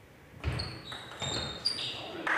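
Table tennis rally on a sports-hall floor: sharp knocks of the ball on bat and table, and short high squeaks from the players' shoes, starting about half a second in.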